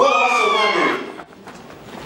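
A woman's long, low wailing cry, about a second long, that rises at once and then falls in pitch before dying away.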